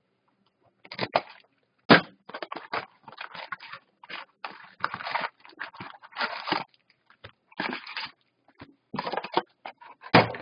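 Foil-wrapped hockey card packs crinkling and a cardboard hobby box rustling in irregular handling bursts as the packs are pulled out and stacked, with a sharp snap about two seconds in.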